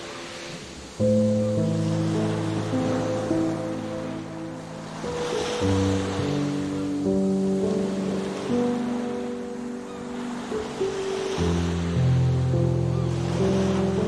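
Calm, slow music of long held chords over ocean surf. The chords change about every five seconds, and the waves wash in and swell at about the same pace.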